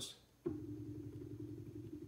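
Electronic expansion valve's stepper-motor head being driven against its fully closed stop. Its gears can no longer turn, and it gives a steady humming buzz that starts about half a second in.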